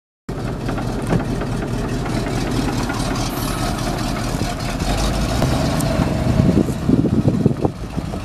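The 1996 Ford F700's 7.0-litre V8 engine, converted to run on propane, idling with a steady low rumble. It grows louder and more uneven in the last couple of seconds.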